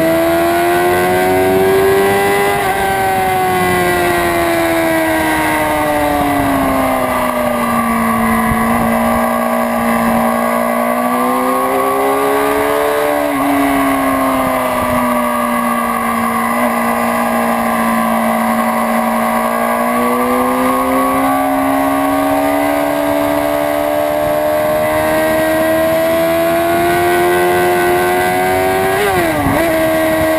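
2006 Honda CBR600RR's inline-four engine heard onboard at speed, its pitch rising, falling slowly and holding steady through corners, with a sharp dip and recovery near the end. Wind rush runs under the engine note.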